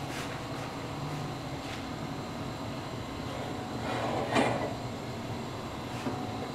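Brief clatter of a metal wok being handled over a gas stove, peaking in a sharp clank about four seconds in, against low steady background noise.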